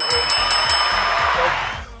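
Edited sound-effect sting: bright chime-like jingles ringing about four times at the start over a loud rushing whoosh that fades away after about a second and a half, with background music underneath.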